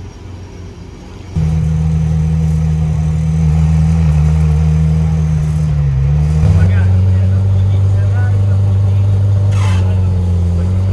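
McLaren Senna's twin-turbo V8 firing up about a second in, then running loud and steady at idle; its note shifts about six and a half seconds in as the car starts to pull away.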